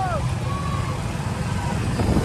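Motorcycle and scooter engines running on the move, with wind rumble on the microphone and brief snatches of voices near the start.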